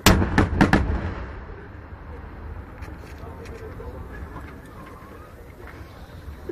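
Aerial firework shells bursting: a loud bang at the very start, then three more quick reports within the first second, followed by a lingering low rumble that slowly fades.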